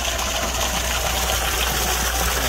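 Water gushing and bubbling from a pond airlift pump's outlet as it starts moving the water into a current, over a steady low hum.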